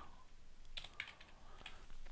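A few faint keystrokes on a computer keyboard, typed as separate clicks.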